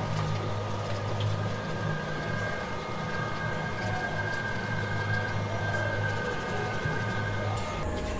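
A steady low mechanical hum with a faint high-pitched whine over it, like a fan or small motor running; the hum drops away near the end.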